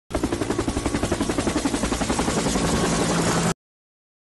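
A loud, rapid pulsing sound effect, about eight even beats a second, that cuts off abruptly shortly before the end.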